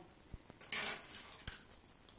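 Hard plastic hair rollers being handled: a few light clicks and one short clattery rattle just under a second in, which is the loudest sound.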